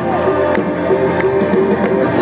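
Rock band playing live through a loud PA: strummed electric guitars held over regular drum hits, with no voice in this stretch.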